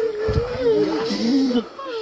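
A woman wailing in grief, one long high cry that wavers in pitch, with a second, lower voice crying as well.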